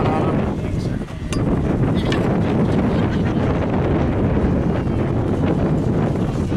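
Wind buffeting the microphone: a steady, loud low rumble throughout, with a brief voice right at the start.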